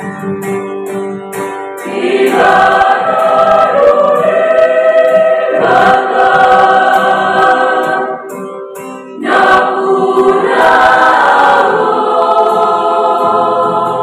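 Mixed youth church choir singing a hymn in harmony, with an acoustic guitar accompanying. The singing swells louder about two seconds in, drops back briefly around eight seconds, then comes in strongly again.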